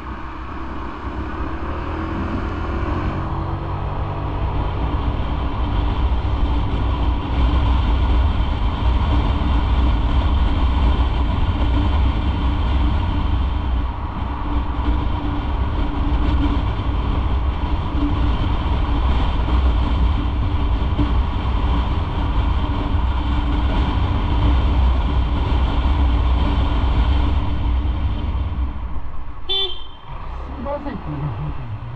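Motorcycle riding along a city street: a steady low engine rumble with wind and road noise. It grows louder over the first several seconds as the bike picks up speed, then holds steady.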